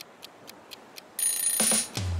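Clock-like ticking sound effect, about four ticks a second, counting down the time to answer. A little past halfway a much louder rushing sound effect cuts in.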